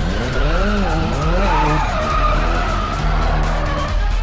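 Sports-car engines revving, their pitch swooping up and down in quick swings and then holding steadier. Tyres squeal as the car drifts through the turns.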